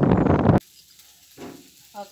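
Loud rushing noise of rain and wind that cuts off abruptly about half a second in. After that it is nearly quiet, with a brief faint voice sound.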